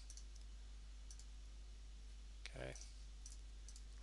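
A few faint, short computer mouse clicks over a steady low hum.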